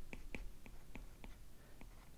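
Faint ticks and light scratches of a stylus on a tablet while handwriting, about three to four small taps a second.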